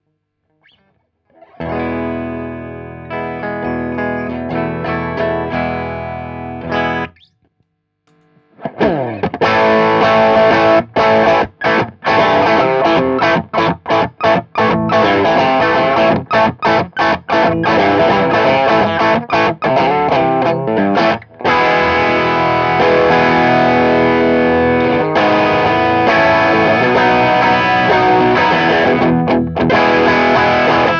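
Electric guitar through an Ulbrick 12AXE overdrive pedal with every control at twelve o'clock. About two seconds in, a full chord is strummed and left to ring. After a short pause, steady rhythmic chord strumming follows, broken by many quick stops.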